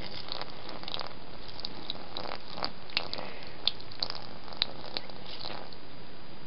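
Water from a glass jar falling onto a plush toy on carpet: scattered small drips and pats, irregular, over a steady hiss.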